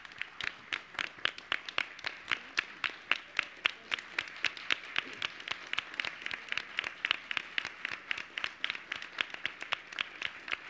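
A small group applauding: steady clapping in which individual claps stand out, several a second.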